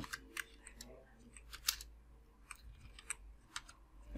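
Computer keyboard keystrokes: faint, irregularly spaced clicks as a few characters are typed and deleted.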